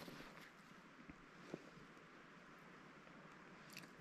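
Near silence: faint outdoor ambience, with one small click about a second and a half in.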